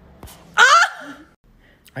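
A short, high-pitched vocal cry about half a second in, falling in pitch at its end.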